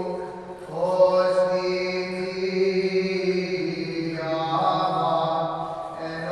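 Greek Orthodox liturgical chant: a single voice holds long, steady notes, moving to a new pitch about a second in and again past the middle.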